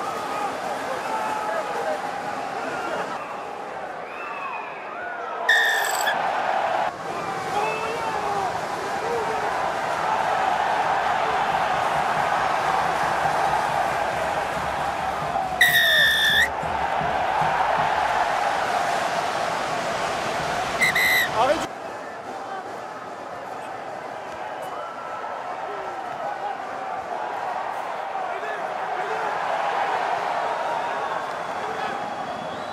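Rugby referee's whistle blown three times: a short blast about five seconds in, a longer blast around sixteen seconds, and another short blast about twenty-one seconds in, over steady stadium crowd noise and shouting from the pitch.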